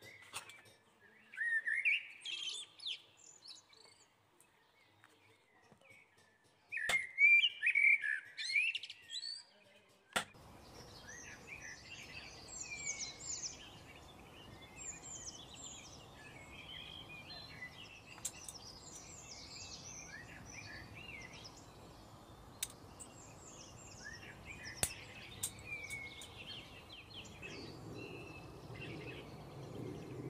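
Small songbirds chirping and twittering in quick rising and falling notes. There are two short loud bursts in the first ten seconds, then near-continuous twittering over a low background hiss, with a few sharp clicks.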